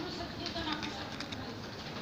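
Indistinct voices in the background, with a few clicks and rubs of fingers handling the recording phone.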